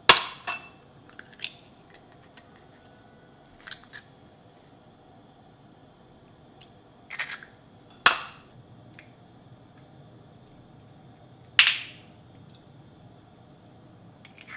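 Eggs being cracked and separated by hand over small drinking glasses: a few sharp knocks of shell, several seconds apart, with fainter taps between. The loudest come at the start and about eight seconds in, and one about eleven seconds in has a short glassy ring.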